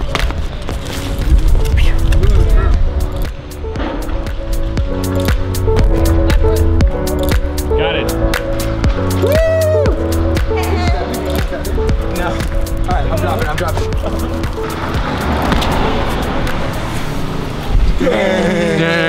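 Upbeat background music with a steady beat and heavy bass, with voices faintly under it.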